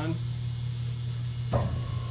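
Steady electrical hum from a Kramer Grebe bowl cutter. About three quarters of the way through, the blade motor switches on with a sudden start, adding a steady whine.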